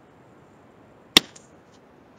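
A mug set down on a desk: one sharp knock a little past halfway, followed by a couple of faint taps.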